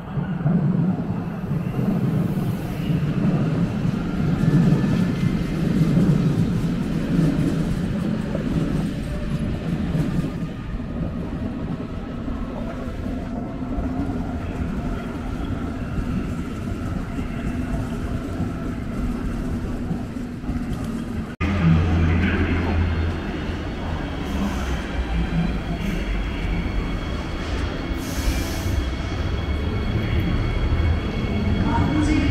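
Electric passenger trains standing at station platforms: a steady low rumble, strongest in the first third. After a sudden cut about two-thirds of the way in, a steady low hum with a faint high whine takes over.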